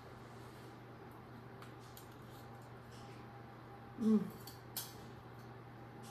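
A woman tasting a spoonful of hot dessert, quiet except for a short appreciative "mm" about four seconds in and a faint click just after, over a steady low room hum.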